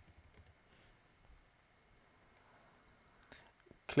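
A few faint clicks of a computer keyboard and mouse over quiet room tone.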